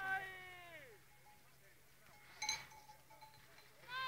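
Spectators' long drawn-out shouts of encouragement, each call falling in pitch, one at the start and another beginning right at the end. A brief ringing clink comes about two and a half seconds in.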